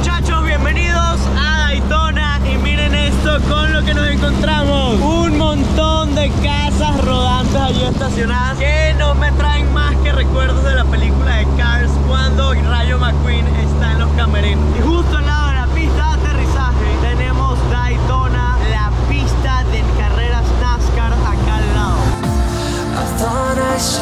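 Steady drone of a single-engine piston propeller light plane heard from inside the cabin, its pitch shifting slightly about a third of the way through and again past halfway. A man talks loudly over it.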